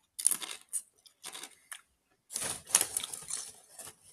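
Crunching of a Doritos Flamin' Hot Tangy Cheese tortilla chip being bitten and chewed, in irregular crackly bursts that grow denser in the second half.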